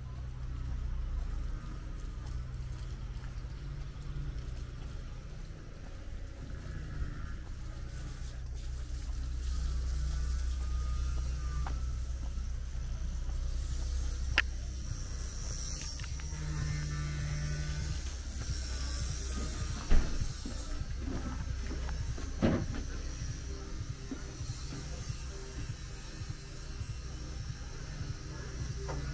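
Outdoor ambience: a steady low rumble with faint high-pitched chirping above it, broken by a few sharp knocks, the loudest about two-thirds of the way through.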